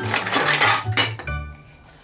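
Plastic toy pots, plates and play-food pieces clattering as they are picked up and knocked together, over background music. The clatter is busiest through the first second and dies away near the end.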